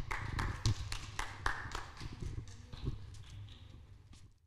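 Footsteps on a stage floor: a string of irregular light taps, several a second, growing fainter as the walker moves away, over a low steady hum of room tone.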